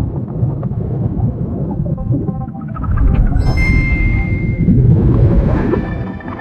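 Cinematic AI-generated ad soundtrack for an underwater scene: a deep, heavy rumble with music, swelling louder through the middle, and a high held tone entering about three and a half seconds in.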